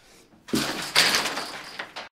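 A sudden thump about half a second in, followed by about a second of loud, rushing noise across all pitches.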